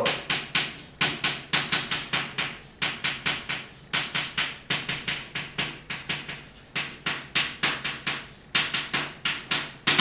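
Chalk writing on a blackboard: a quick run of sharp taps and short scrapes as each stroke is laid down, about three or four a second, in groups with brief pauses between them.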